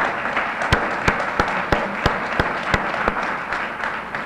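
Audience applausing in a dense patter of clapping. Over it, one pair of hands claps loudly close to the microphone, about three claps a second, and stops about three seconds in.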